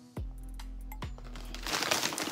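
A shopping bag crinkling as it is handled, over faint background music with a steady sustained tone.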